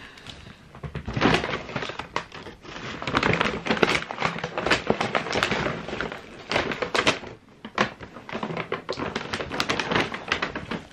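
A bag being handled and rummaged through close to the microphone: irregular rustling with many quick clicks and taps from about a second in.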